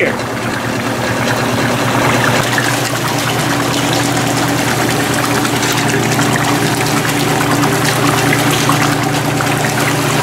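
RP-4 shaker table running: a steady machine hum under the continuous wash of recirculated water flowing across the shaking, riffled deck.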